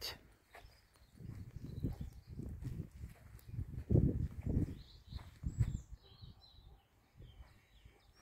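Footsteps of a person walking, a regular series of dull low thuds about twice a second, with faint bird chirps in the second half.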